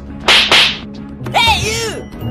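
Two sharp whip-crack swishes in quick succession, then a short cartoonish comic sound whose pitch arches up and down.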